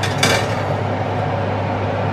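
Oven fan running steadily with a low hum, and a short glass clink of a baking dish on the oven rack about a quarter second in.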